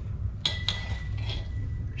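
Steel line pin clinking against brick and concrete as it is worked into place at the foot of a story pole: two sharp metallic clicks about half a second in, then a few fainter taps.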